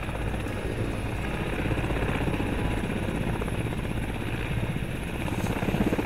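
Mil Mi-17 transport helicopters running on the ground with rotors turning: a steady rotor chop over turbine noise.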